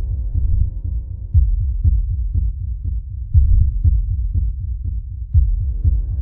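Heartbeat sound effect: low thuds in an uneven beat, about two a second, the strongest every couple of seconds. A held music drone fades out beneath them in the first few seconds.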